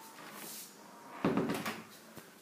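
A short wooden clatter of a door being handled, about a second and a quarter in, lasting about half a second; otherwise quiet room sound.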